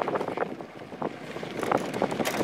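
Fat bike rolling along a dirt trail: the tyres crunch over the ground, with a few sharp clicks and rattles from the bike, and wind buffets the microphone. It goes quieter in the middle and picks up again near the end.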